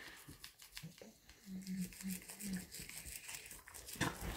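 Toothbrush bristles scrubbing a dog's teeth: faint, soft scratchy scrapes and clicks. In the middle come four short low hums from a voice.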